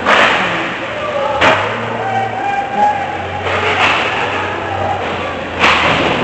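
Ice hockey play in an indoor rink: sharp knocks of sticks, puck or boards at the start, about a second and a half in, near four seconds and near the end, over spectators' voices.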